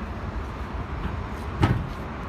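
The hinged, seat-mounted engine cover of a ride-on floor sweeper is lowered and shut with a single thud about one and a half seconds in, over a steady low rumble.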